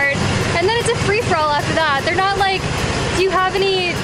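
Mostly a woman's voice talking, over the steady low rumble of a golf cart driving along.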